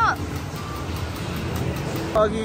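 Steady, even background din of an amusement arcade, with a voice trailing off at the very start.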